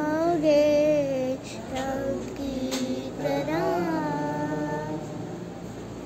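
A young girl singing a Christian gospel geet, holding long notes that bend up and down in two phrases; the last phrase ends and fades out about five seconds in.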